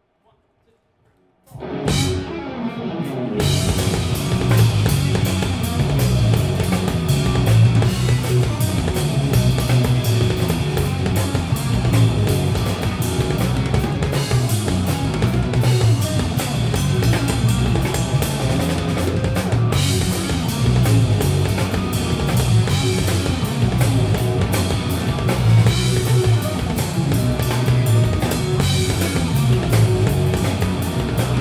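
Live rock power trio of electric guitar, electric bass and drum kit playing loud. After a brief silence the music starts about a second and a half in, and the full band with drums is going about two seconds later.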